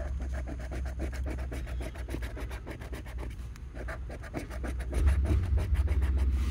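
Scratch-off lottery ticket being scratched with a round scratcher: fast, even back-and-forth strokes rasping the latex coating off the paper's number spots. A low steady rumble sits underneath and grows louder near the end.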